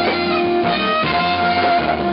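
Live band playing instrumental R&B: violin and saxophone playing sustained, gliding notes over drums and electric guitar.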